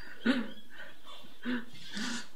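A woman crying: two short sobs about a second apart.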